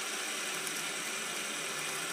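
Two fidget spinners spinning side by side, giving a steady, even whir.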